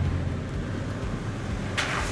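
Full-size Toyota Tundra pickup driving along a dirt trail with a low rumble. Near the end its tyres hit a puddle with a short rush of splashing water.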